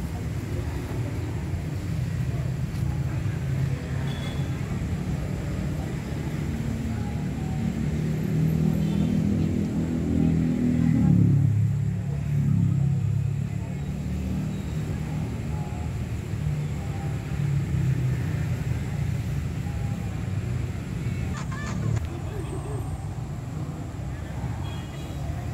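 Indistinct murmuring voices over a steady low rumble, the voices loudest about ten to twelve seconds in.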